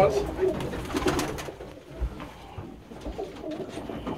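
Domestic pigeons cooing in a small wooden loft.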